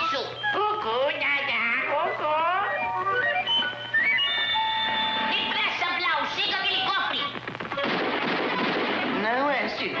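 Cartoon soundtrack: music with swooping, sliding-pitch sound effects. A few notes are held steady about halfway through, and a stretch of hissing noise with quick rising-and-falling glides comes near the end.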